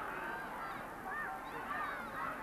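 Crowd noise at a suburban rugby league ground: a steady low murmur with a few faint, distant shouts from spectators.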